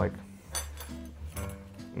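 Background guitar music with held notes, and a couple of light metallic clinks of cutlery being picked up.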